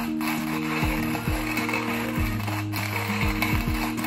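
Coffee grinder grinding coffee beans, a steady grainy, ratcheting crunch that goes on without pause.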